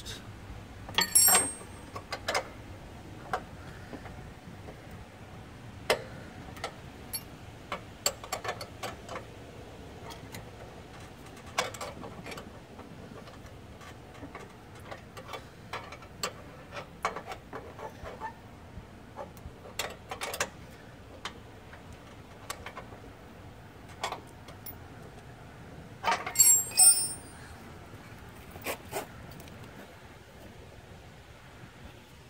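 Wrenches clicking and clinking on the steel deck-height adjustment bolt and nut of a John Deere Z345R mower deck as the nut is turned to lower the deck. Irregular sharp clicks, with louder ringing metal clinks about a second in and again near the end.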